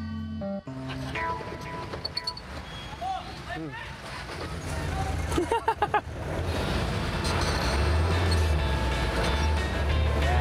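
A jeepney's engine running with a low drone that grows louder in the last couple of seconds, under background music and a few brief voices.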